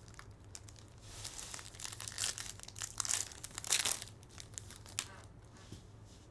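Foil wrapper of a sports-card pack being torn open and crinkled. It comes as a run of rustling bursts from about a second in to about five seconds in, loudest in the middle.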